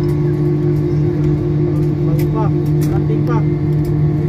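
Steady drone of an Airbus A320-family jet airliner's engines at taxi power, heard inside the cabin, with a few sharp clicks.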